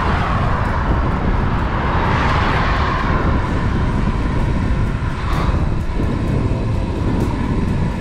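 Wind rushing over a bicycle-mounted camera's microphone on a downhill ride, a steady rumble. A motor vehicle's road noise swells over the first few seconds and then fades as it passes.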